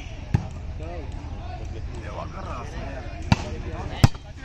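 A volleyball being struck by hand: sharp slaps about a third of a second in and again about three seconds later, with a third right at the end. Chatter from people around the court runs underneath.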